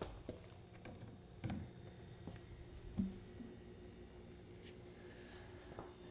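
Faint handling noises, a few soft knocks and rustles, as a mini fridge's power cord is handled and plugged in, over a quiet room with a faint steady low hum.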